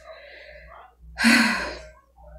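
A woman's audible, breathy sigh about a second in, loudest at its start and fading over about half a second, after softer breathing.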